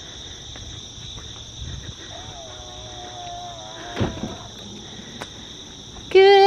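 Steady chorus of night insects, a continuous high trilling in two bands. A faint held tone comes in about two seconds in and fades out, and there is a single thump about four seconds in.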